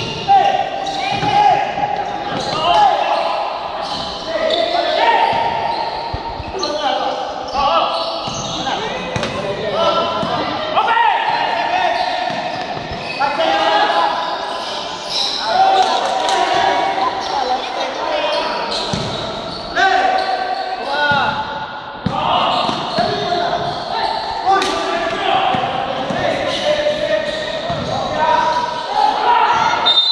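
Indoor basketball game: a ball bouncing on the court amid players and spectators calling and shouting, with no clear words, all echoing in a large gym hall.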